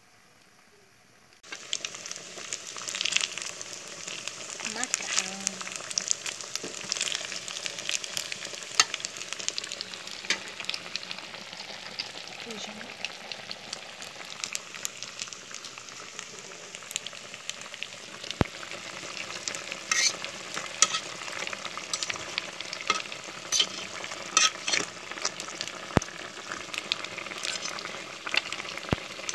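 Meat frying in a pot on a wood-burning stove: a steady sizzle thick with crackles and pops. It starts about a second and a half in.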